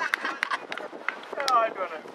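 Voices shouting and calling across a football pitch, loudest about one and a half seconds in, with a few sharp knocks mixed in.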